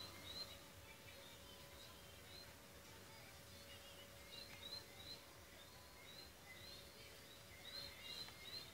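Near silence: room tone with faint, short high chirps repeating about twice a second, most of them in the second half, over a faint steady hum.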